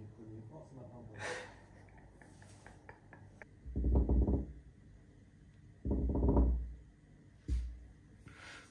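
A person's voice close to the microphone: two muffled, wordless vocal sounds about a second long each, about two seconds apart, and a shorter one near the end. A few faint clicks come before them.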